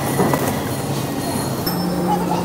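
Shopping trolley rolling across a supermarket's tiled floor, its wheels rattling and squeaking, over the steady hum of the store.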